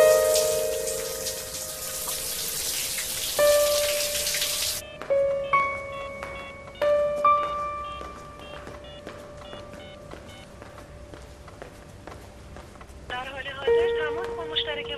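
Shower spray running hard for the first few seconds, then cut off abruptly. Under and after it, background music of long held notes that change every second or two.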